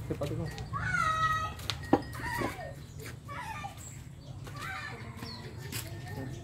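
A single drawn-out high call about a second in, rising and then held, followed by a sharp knock, with quiet voices around.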